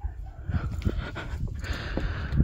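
Footsteps on a wooden porch deck, several short knocks, mixed with breathing and the low rumble of a hand-held phone being carried.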